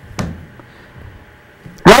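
A pause in the talk: low steady background hiss, with one brief sound just after the start. A man's voice comes back in near the end.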